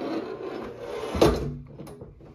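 Heavy plastic lid of a Grizzly cooler being opened: a rubbing scrape, then a loud thump a little past halfway as it swings back, and a light click near the end.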